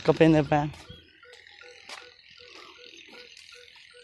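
Frogs croaking, a steady run of short low calls about three a second.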